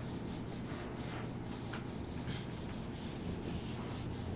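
Marker pen writing on a whiteboard: a run of short, scratchy rubbing strokes, several a second, over a steady low hum.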